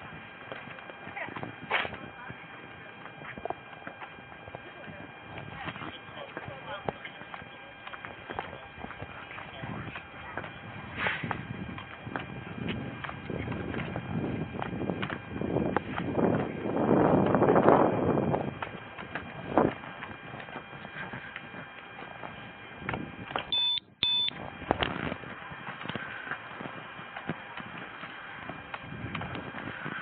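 Wheeled suitcases rolling over pavement joints, their wheels clacking irregularly among footsteps, over a faint steady electronic hum. A louder rush of noise swells for a couple of seconds past the middle, and the sound cuts out briefly with a short blip a few seconds before the end.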